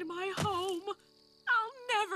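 A cartoon dragon princess crying aloud in a wavering, wailing voice for about a second. After a short pause her crying voice starts again as she begins to sob out words.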